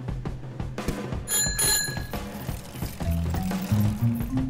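A bicycle bell rings once, about a second in, briefly, over steady background music.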